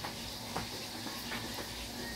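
Steady room noise: an even hiss with a low steady hum, and a few faint small ticks.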